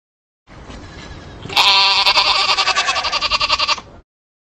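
A goat bleating: one long, quavering bleat about a second and a half in, after a second of faint hiss.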